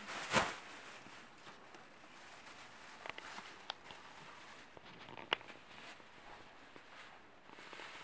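Faint handling noise from a plastic bag-holder frame and the thin plastic bag being fitted into it: a soft knock about half a second in, then quiet rustling with a few small sharp plastic clicks.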